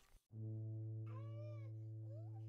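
Faint sustained low note with even overtones, held steady. About a second in, a short high-pitched call rises and falls over it, and a smaller rising call comes near the end.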